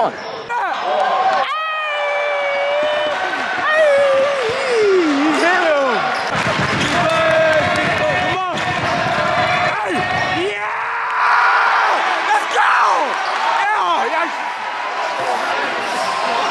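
Basketball game in a gym: a ball bouncing on the hardwood floor and sneakers squeaking as players run, with shouting and voices from spectators in the stands.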